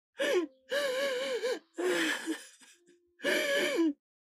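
A woman wailing and sobbing in distress: four drawn-out cries with a quavering, wavering pitch, the second one the longest.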